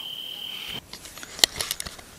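Crickets chirping in a steady high trill that cuts off suddenly after almost a second, followed by a few sharp clicks.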